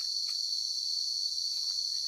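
A steady chorus of forest insects: a continuous, high-pitched drone that holds the same pitch without a break.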